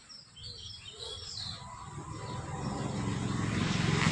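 A few bird chirps early on, then the low rumble of a motor vehicle's engine growing steadily louder as it approaches.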